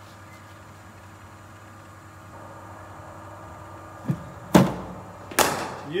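A bowling machine delivers a hard cricket ball that is driven off the bat on an indoor artificial pitch. After a quiet stretch with a low steady hum, there is a faint click, then a loud sharp knock about four and a half seconds in and a second one just under a second later.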